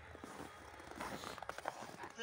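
Quiet outdoor background with faint rustling and a few light clicks and knocks, from about a second in, as a handheld phone camera is moved about.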